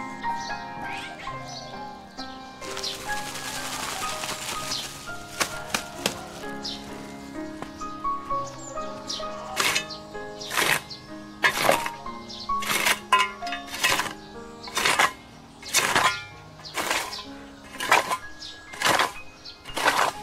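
Background music with a melody; from about halfway, a hoe blade strikes the dry soil about once a second, each strike a sharp chop louder than the music.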